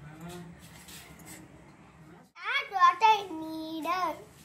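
A child's voice in the second half, drawn out into a held note near the end. The first half is quiet apart from a faint low hum.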